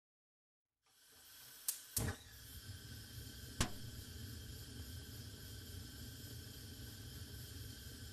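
Gas hob burner lighting: three sharp clicks, then the steady hiss of the blue gas flame burning.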